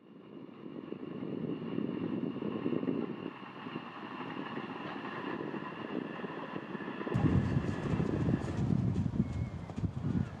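A passing train: a steady whine of engine and wheels that swells over the first few seconds and holds, with a heavier low rumble joining suddenly about seven seconds in.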